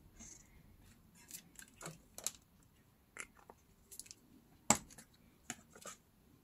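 Scattered small handling noises of paper crafting: soft rustles and light clicks as a glue bottle, a cardstock coffin box and cheesecloth are handled, with one sharper click about three-quarters of the way through.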